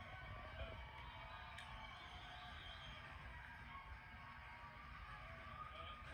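Faint music playing through a television's speakers and picked up across the room, over a steady low rumble.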